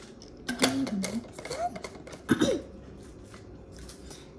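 Short wordless vocal sounds from a girl, a few brief pitch glides, mixed with sharp clicks and knocks from a vacuum flask being handled and set aside. These come in the first two and a half seconds, followed by a quieter stretch.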